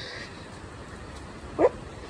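Steady hiss of heavy rain falling on a tiled patio, with one short, loud, high-pitched cry about a second and a half in.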